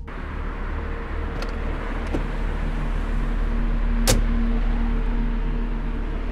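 A car door being handled as someone gets into the driver's seat: a few small clicks, then one sharp click a little over four seconds in, over a steady low rumble.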